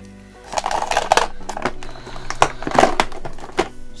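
Paper and craft materials being handled on a desk: rustling and crinkling, with several sharp taps and clicks.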